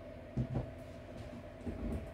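A steady background hum, with a few soft knocks and rustles from used shoes being handled: once about half a second in, and again near the end.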